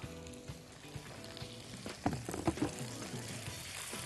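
Zucchini and onion slices sautéing in olive oil in a frying pan, with a faint, steady sizzle. Soft background music plays under it.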